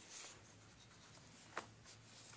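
Very faint rubbing of stiff gasket sheets being handled and separated by hand, with one short click about one and a half seconds in, over a low steady hum.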